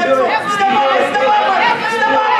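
Several voices of spectators and coaches talking and calling out at once, an indistinct overlapping chatter.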